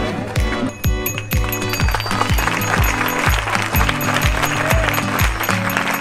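Background music with a steady kick-drum beat, about two beats a second, over a repeating bass line.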